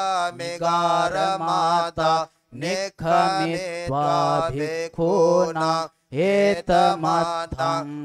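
A Buddhist monk chanting Pali scripture on a steady, near-level recitation pitch, with short breath pauses about two and a half and six seconds in.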